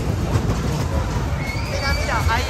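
Whip-type fairground ride car (Látigo) running on its track: a loud, steady rumble and rattle of the car rolling over the ride's steel floor. A high steady tone comes in about a second and a half in.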